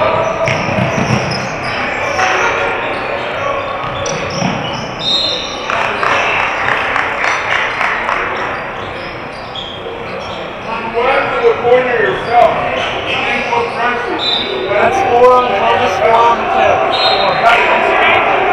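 Basketball game on a hardwood court: a ball bouncing, short high sneaker squeaks, and players' and spectators' voices calling out.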